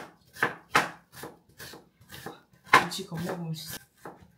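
Chef's knife chopping onion and spring onion on a wooden cutting board: about ten uneven knife strikes in four seconds, the loudest a little under three seconds in.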